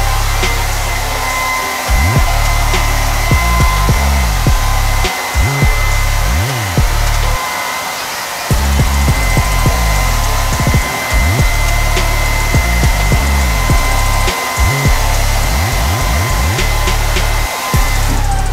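Handheld hair dryer running steadily, a rush of air with a steady high whine, as it blows damp hair dry and lifts it for volume.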